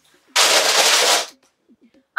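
A loud rustling burst of handling noise, lasting about a second.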